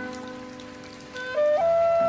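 Chinese bamboo flute melody over a soft backing track. The held accompaniment chord fades during a lull, then about one and a half seconds in the flute comes in and steps up to a loud, held note.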